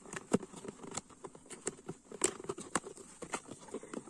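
Fingers picking and tapping at a cardboard box, trying to open it one-handed: irregular light clicks and taps with some rustling of the card, a few sharper clicks among them.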